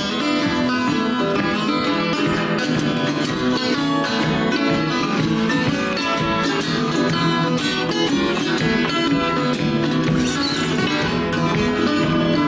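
Acoustic guitar music: a continuous stream of plucked notes.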